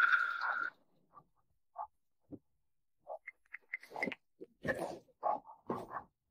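A door opening at the start, with a brief high squeak. After a quiet stretch come scattered short knocks, taps and rustles of objects and papers being handled at a desk.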